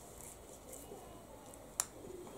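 Faint soft scraping as ground raw mango chutney paste is wiped by hand off a stone grinding roller and slab, with one short sharp click near the end.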